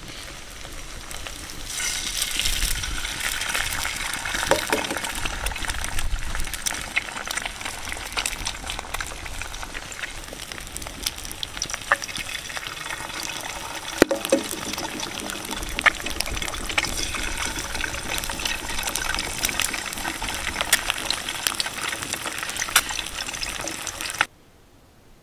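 Quail eggs frying in oil in a hot cast-iron skillet: a steady sizzle full of small crackles and pops, which swells about two seconds in as the eggs hit the pan. A few sharp clicks stand out as the small shells are cracked open.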